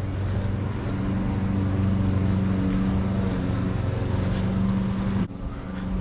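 A motor running with a steady, even-pitched drone, cutting off abruptly about five seconds in.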